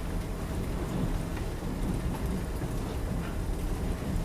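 Steady low rumble of room noise in a lecture hall, with no speech.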